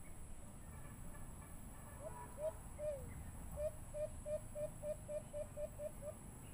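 White-eared brown dove cooing: three slower low notes about two seconds in, the third falling, then a quick, even run of about ten short coos, roughly three a second.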